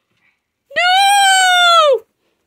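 A single high-pitched cry about a second long, holding a steady pitch and falling at the end before it cuts off.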